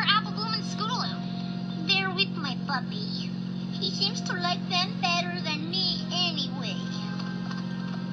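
Cartoon dialogue in high, young voices in short phrases over light background music, with a steady low hum underneath.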